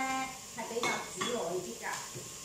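Metal spatula clinking and scraping against a steel frying pan while vegetables are stir-fried, with two sharp clinks about a second in.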